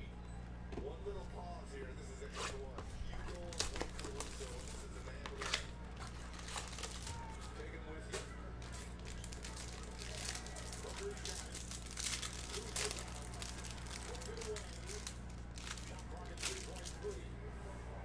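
A foil trading-card pack being torn open and its wrapper crinkled by hand: a long run of sharp crackles and rips, over a steady low electrical hum.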